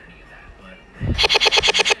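Playback of a chopped-up video clip from a phone editing app: a snippet of a child's voice repeated about ten times a second in a rapid stutter, the Sparta-remix style effect made by splitting the clip into tiny pieces. It starts with a thump about a second in and cuts off suddenly at the end.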